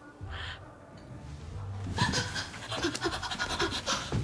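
A drunk woman's breathy, non-speech vocal noises: a short breath early on, then panting and hoarse noises from about halfway.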